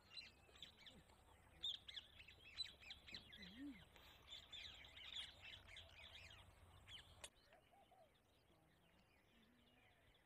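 Faint chatter of many small birds: a dense run of short, quick chirps that overlap one another. It stops with a click about seven seconds in.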